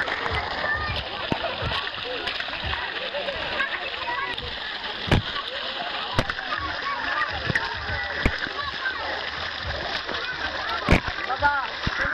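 Pool water splashing and lapping with a steady babble of children's voices and shouts across a busy pool, broken by a few sharp splashes, the loudest about five seconds in and again near the end.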